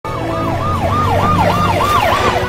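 Siren yelping, a fast up-and-down wail about three times a second, over a low rumble from a utility vehicle on the move.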